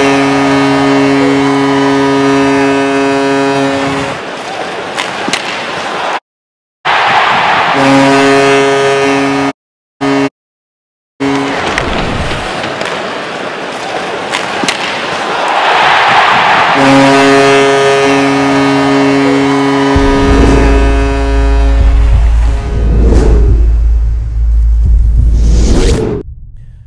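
Tampa Bay Lightning's arena goal horn sounding in long, steady blasts over a cheering crowd, three times as the goal highlight replays. A deep, heavy bass sound comes in near the end.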